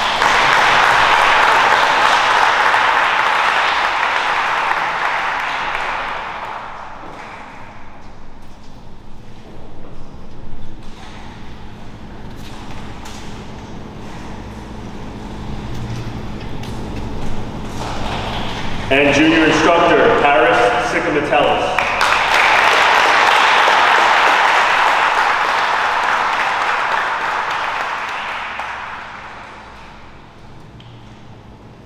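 Audience applauding, a round that dies away about six seconds in. Voices rise around nineteen seconds in, then a second round of applause starts just after and fades out near the end.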